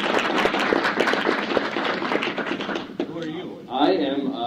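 Audience applauding, many hands clapping on a mono cassette recording; the applause dies away about three seconds in, and a man starts speaking near the end.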